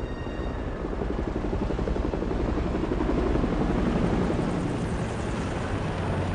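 Helicopter rotor noise: a low beating rumble that grows louder over the first three or four seconds, then eases a little.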